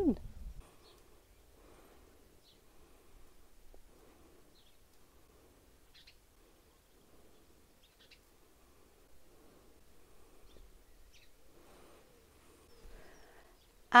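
Quiet outdoor garden ambience with a few faint, short bird chirps scattered through it, a couple of seconds apart.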